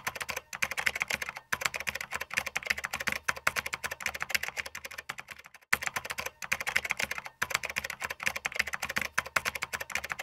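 Fast typing on a computer keyboard: a dense run of key clicks with a short pause about a second and a half in and a break near six seconds, after which the same run seems to start over.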